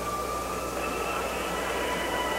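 Steady, even background noise of an old television football broadcast in a gap between commentary lines, with faint steady high tones running through it.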